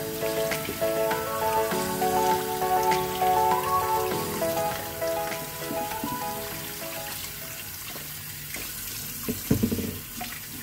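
Tap water running into a glass bowl in a steel sink as dried tilapia is rinsed and turned by hand, with a sharp splash near the end. Soft background music with held notes plays over the first half and fades out about six seconds in.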